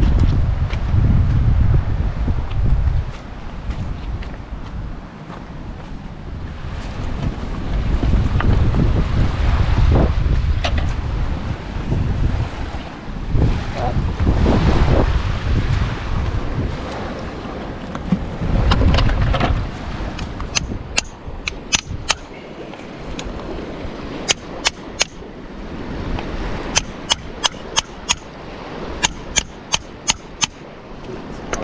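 Wind buffeting the microphone in gusts over a stony shoreline. From about two-thirds of the way in, a run of sharp clicks and knocks of hard stones and shells being handled.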